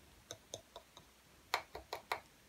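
A few light clicks and taps as a hand handles the casing of a vintage Stihl 08 S chainsaw: faint single clicks early on, then a quick run of three louder taps near the end.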